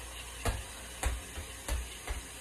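Three light knocks of kitchenware being handled, a little over half a second apart, over a faint low hum.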